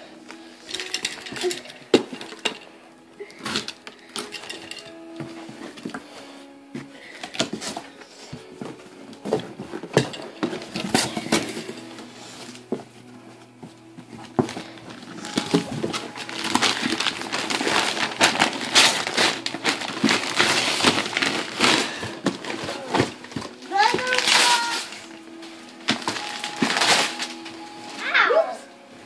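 A large cardboard shipping box being opened and unpacked by hand: packing tape peeled, flaps pushed back, and contents rummaged with repeated scrapes, knocks and a long stretch of rustling in the middle. Music plays softly underneath, and a child's voice comes in briefly near the end.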